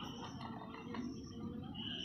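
Quiet outdoor background with a faint steady insect trill, clearest near the end.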